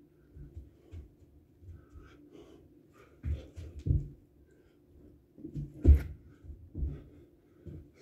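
Burpees on a rubber floor mat: a series of dull thuds as hands and feet land on it, with heavy breathing between them. The thuds come in two clusters, one about three to four seconds in and a louder one about six seconds in.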